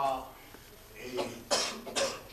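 A person coughing: a short, sharp cough about one and a half seconds in, just after a man's voice trails off.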